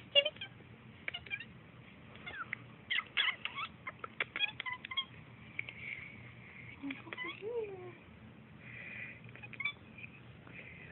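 Scattered clicks and rustles of a hand rubbing a cat lying on its back, with one short meow from the orange tabby cat about seven seconds in.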